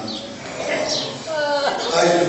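A man's voice through a microphone: brief vocal sounds and breaths between phrases of a speech, with a short drawn-out falling utterance near the end.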